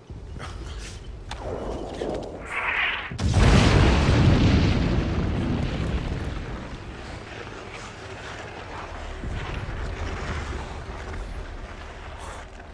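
A low rumble builds, then a short whistle, then a heavy artillery shell explosion about three seconds in, loudest of all, with a long rumbling decay.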